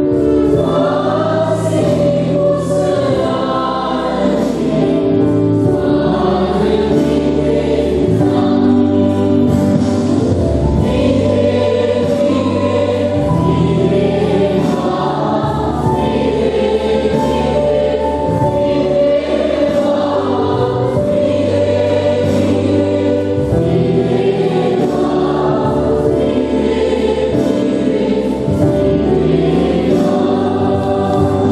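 A church choir singing a hymn in parts, with a sustained instrumental bass line beneath the voices.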